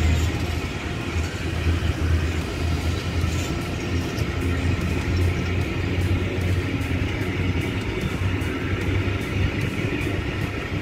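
Covered hopper wagons of a freight train rolling past on the track: a steady rumble of steel wheels on rail over a low drone.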